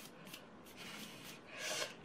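Faint rustling and rubbing of a handmade cardstock greeting card handled and turned in the hands, with a slightly louder rustle near the end.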